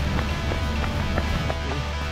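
Background music with a steady low bass, with faint regular taps over it that fit a runner's footfalls on the road.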